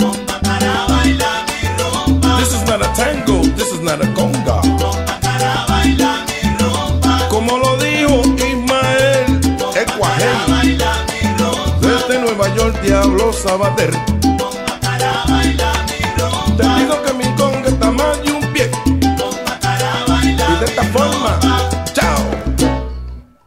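Salsa music recording with a repeating, syncopated bass line under dense percussion and band instruments.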